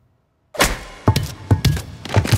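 Playback of an action scene's soundtrack, starting suddenly about half a second in: music with a quick series of heavy thuds and Foley footsteps.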